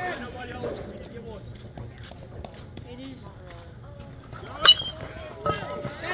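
Faint voices talking and calling at a distance, with one sharp, loud ping a little over three-quarters of the way through that rings briefly at a high pitch.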